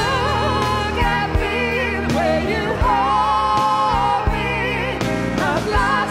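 Studio recording of a band song: a lead vocal sung with vibrato over bass and drums.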